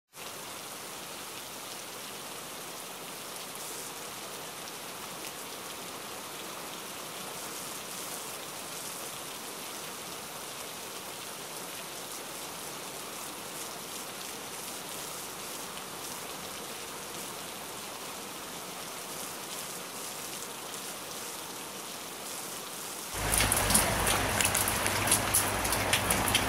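Steady rain, an even hiss. About 23 seconds in it turns much louder, with sharp taps of individual drops striking a hard surface.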